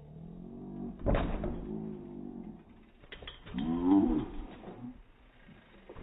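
A bicycle crashing onto a makeshift ramp of wooden boards, one heavy clattering impact about a second in and a few smaller knocks around three seconds. Long, drawn-out human vocal sounds run before and after the crash, the loudest near four seconds.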